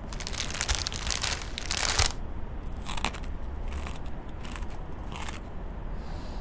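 Crunching, rustling noises: one long stretch in the first two seconds, then several short bursts, over a steady low rumble.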